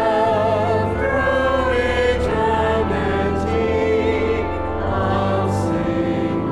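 Mixed church choir singing an offertory anthem in parts, with long held notes sung with vibrato.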